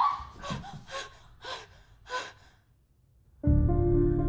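A young woman gasping in fright, several sharp breaths about half a second apart. After a short hush near the end, sustained music tones begin.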